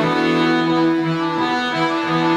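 Cello and piano accordion playing an an dro folk dance tune together: a long held note sounds over shorter, changing lower notes.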